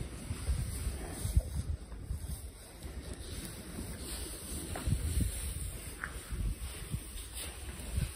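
Wind buffeting the microphone in irregular low rumbles.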